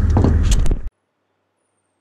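A low, steady idling-engine rumble with a man's voice over it, cut off abruptly about a second in, followed by total silence.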